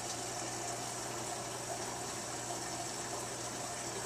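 Aquarium filter pump running: a steady low hum with a constant wash of moving water.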